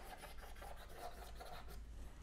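Chalk scratching and rubbing on a chalkboard as words are written: a faint run of short strokes.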